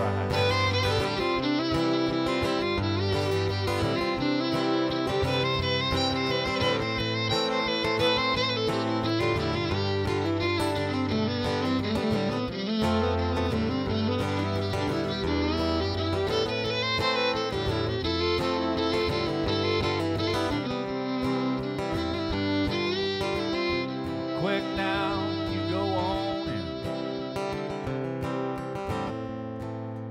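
Fiddle and acoustic guitar playing an instrumental break in a country song, with the guitar strumming chords under the fiddle.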